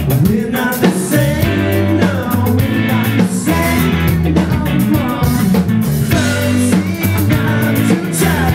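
A live rock band playing, with electric guitars, bass guitar and drum kit and a man singing lead vocals.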